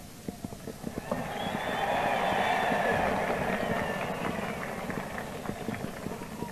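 A large outdoor crowd applauding and cheering, swelling about a second in and slowly fading, heard through an old newsreel sound recording with crackle.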